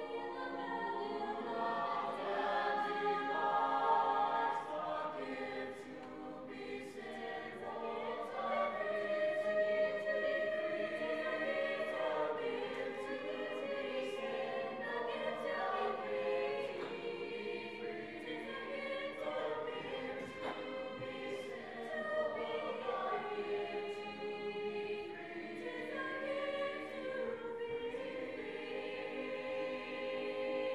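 Mixed high school choir of boys' and girls' voices singing a sustained song in harmony.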